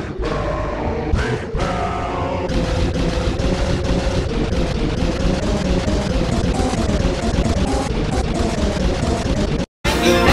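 Rock music playing, cutting out for a split second near the end and coming back louder.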